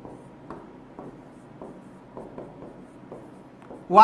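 Marker pen writing on a whiteboard: a quiet series of short, irregular strokes and taps.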